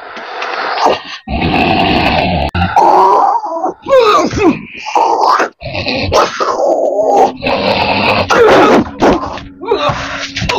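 A man groaning, grunting and wailing in long, strained bursts, some hoarse and some rising and falling in pitch, as if in pain.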